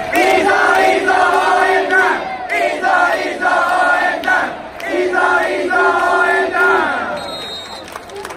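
Crowd of baseball fans singing a cheer chant in unison, in two loud phrases, the second ending about seven seconds in.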